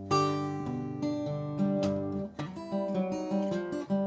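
Fingerpicked steel-string acoustic guitar playing a short blues passage: a sliding C7 figure moving onto a G chord, with a series of plucked notes and chords left ringing.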